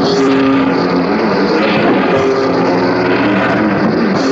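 Punk rock music dubbed from cassette: loud distorted electric guitar chords held in a drone, with no singing.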